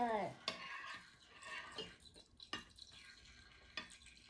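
A spoon stirring thick, sticky slime mixture in a bowl: quiet, irregular scrapes and clicks of the spoon against the bowl.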